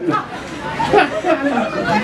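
Mostly speech: a man laughing into a stage microphone, with voices chattering around him.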